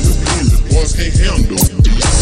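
Slowed-and-chopped hip hop: a slowed-down rap vocal over a bass-heavy beat with drum hits.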